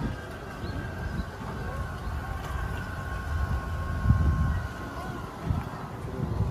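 Outdoor walking ambience: indistinct voices of passers-by, with irregular low rumbling on the microphone that swells about four seconds in, and a faint steady high tone underneath.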